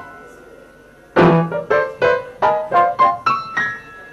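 Piano: a note rings down for about a second, then about eight notes and chords are struck in quick succession, and the last is left to ring.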